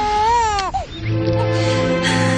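A newborn baby's single cry, rising and then falling in pitch, about a second long, over background music that carries on after it.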